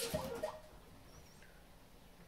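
A short, squeaky lip smack at the start, lasting about half a second, then a quiet room.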